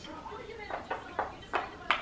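Wooden puzzle pieces knocking against a wooden peg puzzle board as they are picked up and fitted into place: a handful of sharp clicks, mostly in the second half.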